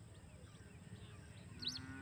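Faint outdoor background with a low rumble and a few soft bird chirps. About a second and a half in, a drawn-out, low, steady-pitched call begins and holds into the end.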